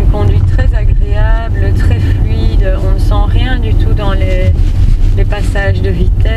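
Steady low rumble of road and drivetrain noise inside the cabin of a moving Mercedes E 300 de plug-in diesel hybrid saloon, with people talking over it.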